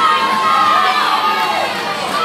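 Audience cheering and shouting for the competitors, several voices yelling at once in rising and falling calls.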